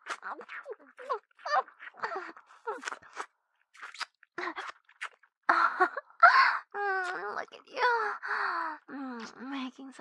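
Close-miked woman's voice and mouth making short wet mouth sounds and murmurs, then louder, longer moans that fall in pitch in the second half. These are simulated licking and sucking sounds in an erotic ASMR roleplay.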